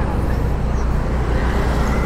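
Steady low hum of a car's engine and road noise while driving slowly, heard from inside the car.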